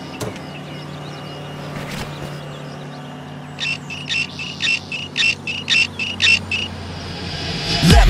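Outdoor ambience with a steady low hum, a few sharp knocks, and then a run of about ten evenly spaced high chirps over three seconds, starting about halfway through.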